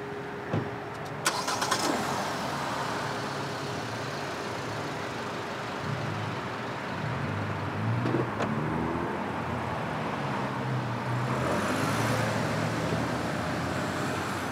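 A car engine running over steady street noise, with a brief rise in pitch about eight seconds in.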